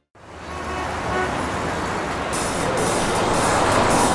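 City street traffic noise fading in after a moment of silence, with lively music joining in about two seconds in.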